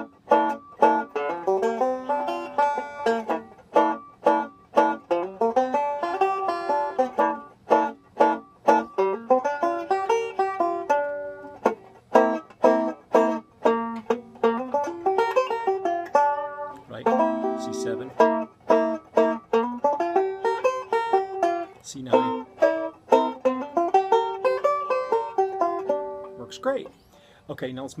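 Five-string resonator banjo playing a C9 chord with improvised pentatonic runs over it, B-flat major pentatonic shapes against the C chord of a 12-bar blues. The quick picked phrases are broken by short pauses.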